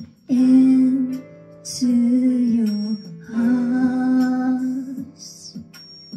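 A woman singing a ballad into a microphone, three long held notes, the last one the longest, over a soft guitar and keyboard accompaniment.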